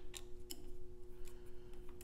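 A few irregular light metallic clicks of a hex key turning in the set screw of a half-inch drill-extension coupler, tightening it onto a 7/16-inch hex-shank bit.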